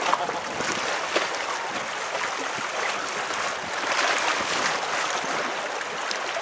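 Waves lapping and splashing against a concrete breakwall, a steady wash of water noise, with faint voices in the background.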